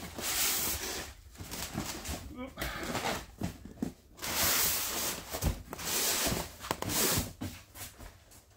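A large cardboard box being slid up off a Styrofoam packing case and lifted away. The cardboard scrapes and rubs against the foam in several bursts of up to a second each, with a dull knock about halfway through.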